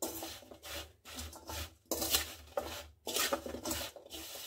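Oiled, spiced carrot, radish and green chilli pieces being stirred in a stainless steel bowl: a wet scraping and rubbing against the steel in about four strokes, with short pauses between them.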